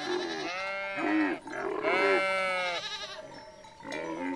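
Sheep bleating: several long, overlapping calls with wavering pitch.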